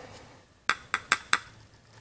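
Four quick, sharp clicks of hard plastic knocking together, about a second in, as an acrylic projection lens is lifted out of its plastic housing, with a fainter click near the end.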